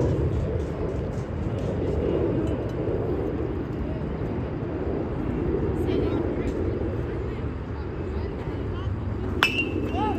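A metal baseball bat strikes the ball near the end with one sharp ping that rings briefly. Beneath it runs a steady background murmur of voices from around the field.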